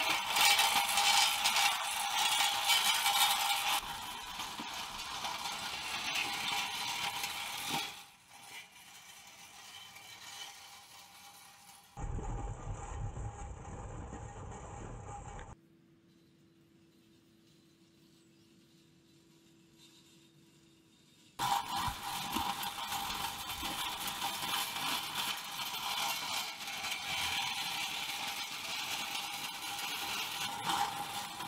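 A square-wheeled bicycle rolling on tank-style tread belts, rubber tread on chains running around square steel frames, making a rattling scraping noise as it is pedalled. The noise is loudest for the first few seconds and fades after about four seconds. It drops to near silence with only a faint hum from about sixteen to twenty-one seconds, then comes back loud.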